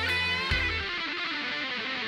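Live rock band playing; about half a second in the bass and drums drop out, leaving electric guitar sounding on its own.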